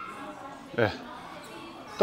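A person's short vocal sound about a second in, sliding steeply down in pitch, over a quiet background with faint voices.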